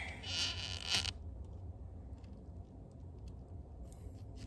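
A short scraping rustle in the first second as hands and arms shift against the inside of an open freezer, then only a few faint ticks over a steady low hum.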